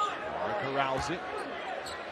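Basketball dribbled on a hardwood court, with sharp bounces at the start and again about a second in, under a commentator's voice.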